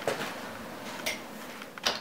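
A few knocks and clatters as a homemade steel rocket stove is handled and fed, the strongest one near the end, over a steady hiss. The stove is smoking heavily on its first test run because it is not drafting properly.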